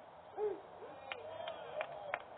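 Short shouted calls from players or spectators at a baseball game, each rising and falling in pitch, with a few sharp clicks between them.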